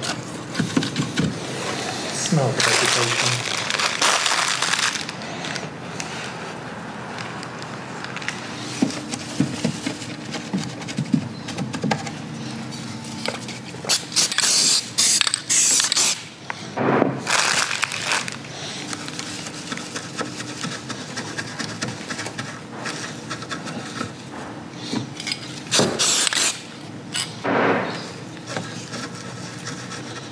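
Aerosol spray can spraying paint in several separate bursts, the longest lasting a couple of seconds.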